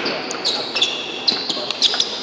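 Table tennis rally: the celluloid ball clicking sharply off the rubber-faced bats and the table, several hits a second, each with a short high ring.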